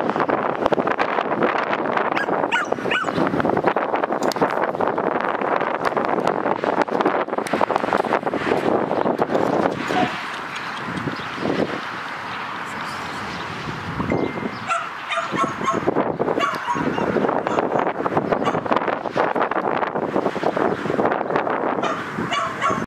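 Dogs barking and yelping almost without pause, with a quieter stretch from about ten to fourteen seconds in.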